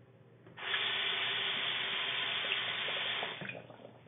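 Water running steadily for about three seconds, starting suddenly and tailing off near the end: the shower the doll is said to get into.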